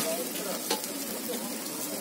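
Takoyaki batter and balls sizzling steadily on a hot takoyaki griddle.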